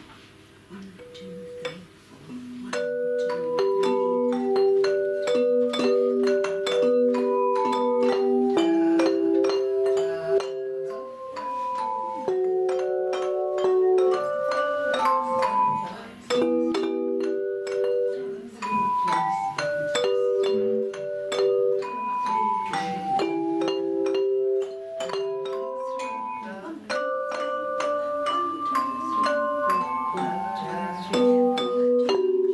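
A belleplate ensemble playing a Christmas tune: hand-held tuned metal plates struck and rung one after another to carry the melody. After a few single notes, the full tune starts about two and a half seconds in.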